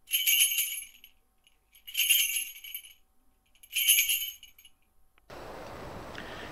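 Small jingling bells shaken three times, about two seconds apart, each shake ringing out briefly and dying away. Near the end a steady outdoor hiss of air begins.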